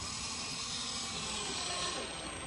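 Ryobi cordless drill running at a steady speed: an even, hissing whir with a thin high whine that starts abruptly and holds without change.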